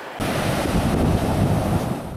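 Heavy sea surf breaking and rushing, with wind buffeting the microphone; it cuts in suddenly a moment in and holds steady.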